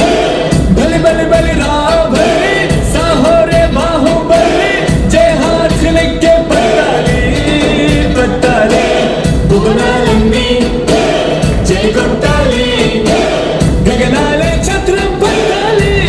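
Live Bollywood song: a man singing into a microphone over violins and a steady drum beat.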